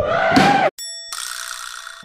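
A drawn-out shout that cuts off suddenly, followed by an edited-in ding sound effect that rings steadily for about a second.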